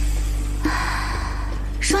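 A breathy intake of breath, a gasp-like hiss lasting about a second, over a steady low drone in the score; a woman's voice starts right at the end.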